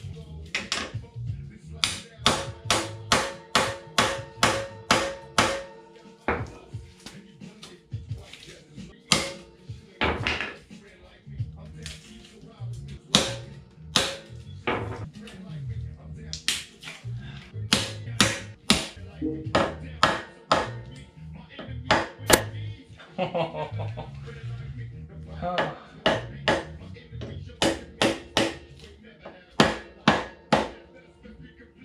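Hammer blows on a hand impact screwdriver, loosening the Phillips-head side-cover screws of a Yamaha RD350 two-stroke engine: sharp metallic strikes, in runs of about three a second and singly in between. Background music plays under them.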